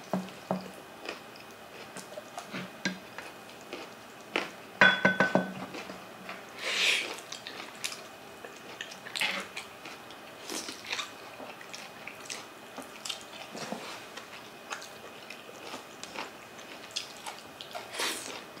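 Close-up eating sounds: biting and chewing with wet, smacking mouth noises from people eating balbacua and fish by hand, with scattered short clicks. A louder cluster of clicks comes about five seconds in.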